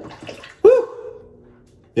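A man's short breathy rush, then a held vocal 'ooh' lasting most of a second, starting about two-thirds of a second in. It is a reaction to the sting of heavy menthol while shaving.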